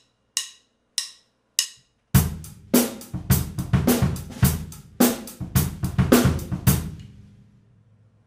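Three evenly spaced count-in clicks, then a drum-kit groove about two seconds in. The hi-hat is played with the up-down wrist motion, accenting the stronger notes with downstrokes and playing the weaker ones with upstrokes, over bass drum and snare, which makes the groove sound looser. It stops about seven seconds in and rings out briefly.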